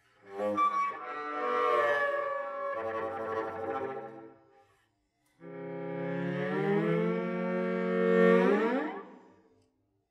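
Solo cello, bowed, playing two sustained phrases split by a short pause about halfway through. The second phrase starts on a low note and ends in an upward slide in pitch.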